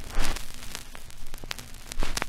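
Old-film soundtrack hiss with scattered crackles and pops and a faint low hum, the worn-film-reel effect under a trailer title card.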